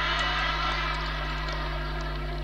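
Crowd noise from the assembled audience, a broad mixed din that swells up just before and holds steady while the speaker pauses. A steady low electrical hum from the sound system runs underneath.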